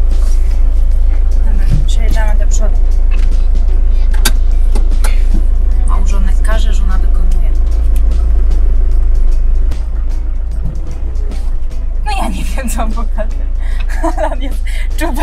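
A loud, steady low rumble that drops in level about ten seconds in, with faint voices, a few clicks and background music over it.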